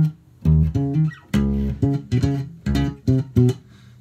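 Electric bass guitar played solo near tempo: a syncopated line of about ten plucked notes, mostly short and separated by rests, with one longer held note a little before the middle.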